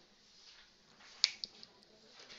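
A single sharp click about a second and a quarter in, followed by two fainter clicks in quick succession, over faint room tone.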